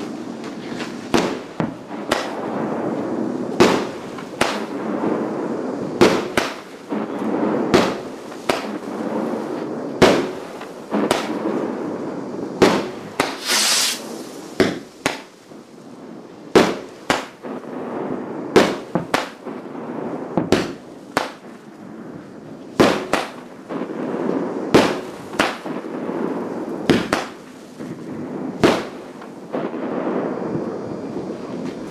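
Aerial fireworks: a continuous barrage of sharp, irregular bangs from rockets and shells bursting, several a second at times, over a steady rumble and crackle of many more fireworks further off. A brief high hiss comes a little before the middle.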